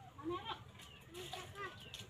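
Young children's high voices calling and chattering in short bursts.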